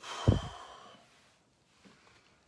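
A man sighing: one heavy breath blown out through pursed lips, buffeting the microphone with a low rumble near its start, then fading away over about a second.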